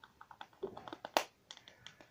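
An irregular run of light clicks and taps from small hard objects being handled, with the loudest click about a second in.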